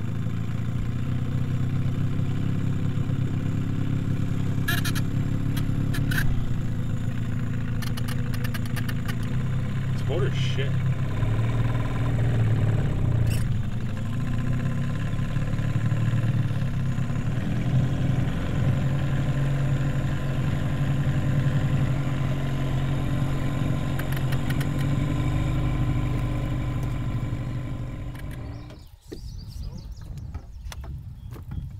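Small Mercury tiller outboard motor running steadily, pushing an aluminium boat, with a few light clicks over it; the motor cuts out shortly before the end.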